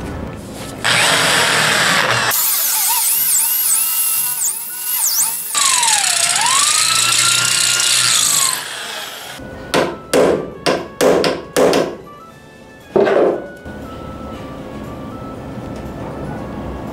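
Electric drill boring into a snapped steel bolt, making the pilot hole for a screw extractor. For several seconds the drill runs under load with high whines that glide up and down, and a lower whine that dips in pitch and recovers. Then come several short bursts of the drill near the end.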